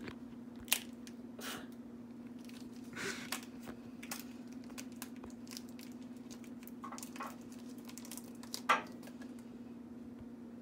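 Small plastic clicks and crinkles from handling and prying open a strip of tiny plastic paint pots, with two sharper snaps, one near the start and one near the end, over a steady low hum.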